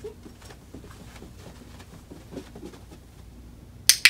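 Soft footsteps and puppy paw-falls on carpet, about two a second, during heel walking. Just before the end a sharp, loud double click of a dog-training clicker marks the puppy's sit.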